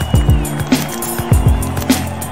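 Electronic outro music with a steady beat: deep kick drums, a sharp hit about every second, and held bass notes.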